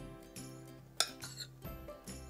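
A metal spoon clinks sharply once about a second in, with a couple of fainter knocks, as dumpling dough is scooped from a bowl and dipped into a pot of soup. Soft background music plays under it.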